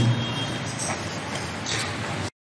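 Steady background hiss of the room and microphone once the chanting has stopped, with a faint brief rustle near the end.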